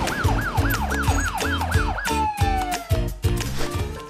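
TV show's closing jingle: music with a steady beat and a repeating rise-and-fall, siren-like sweep about four times a second for the first two seconds, then one long falling glide.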